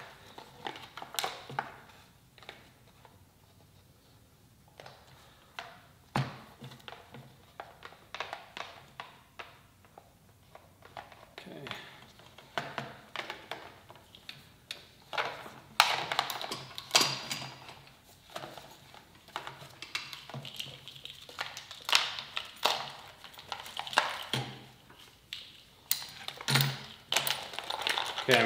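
Wiring harness and cables being fed by hand through a scooter's plastic front cowling and steel frame: irregular clicks, taps and rustling as connectors, cable sheathing and gloves knock against plastic and metal.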